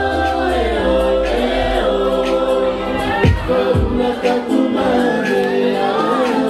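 Cook Islands song sung live by a group of women in close harmony through a PA, with light band backing. The deep bass fades out about halfway through, leaving the voices nearly a cappella.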